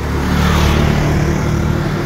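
A motorcycle engine running as it passes close by, a steady low hum that eases off near the end.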